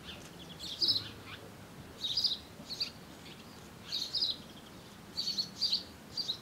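Songbird chirping in short, high phrases, about five of them spaced a second or so apart, over a faint steady outdoor background.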